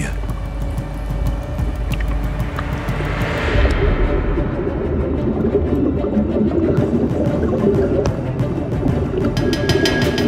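Water rushing and splashing as a helicopter-escape training cabin sinks into a pool, with the sound turning muffled once it is under water about four seconds in. Background music plays throughout.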